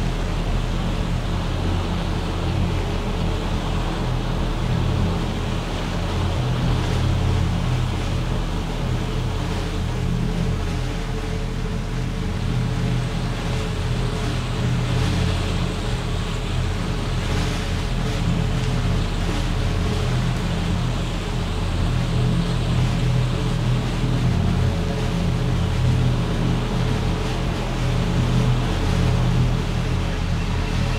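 Experimental ensemble music: a dense, steady drone of several held low tones under a hazy wash of sound, changing little in loudness.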